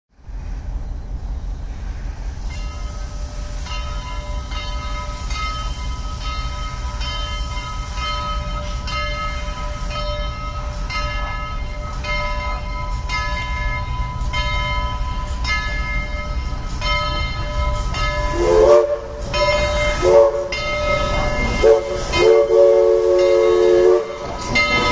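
Southern Railway 4501 steam locomotive approaching, rumbling ever louder, its bell ringing steadily about once a second. From about 18 seconds in, its steam chime whistle sounds long, long, short, long: the grade-crossing signal.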